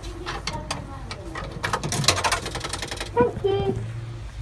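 A coin pushed into a coin-operated kiddie ride's slot, followed by a run of clicks and rattles as it drops through the coin mechanism, thickest about two seconds in. A short voice sounds near the end.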